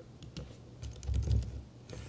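Typing on a computer keyboard: a quick run of key clicks as a line of code is edited.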